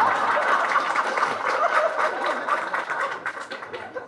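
A group of people laughing together, many voices overlapping, dying down near the end.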